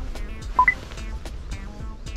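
Background music with a steady repeating pattern, and a short two-note electronic beep stepping up in pitch about half a second in.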